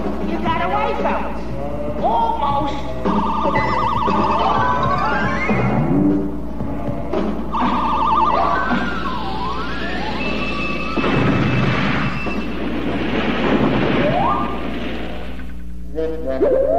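Busy cartoon orchestral score with quick runs and swooping rising and falling glides, with occasional comic thumps mixed in, over a steady low hum.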